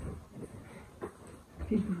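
A few light knocks in a small room, then a short burst of a person's voice near the end.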